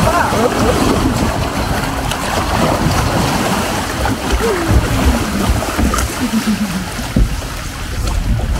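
Water rushing and splashing along a log flume's trough as the log boat is carried along between drops.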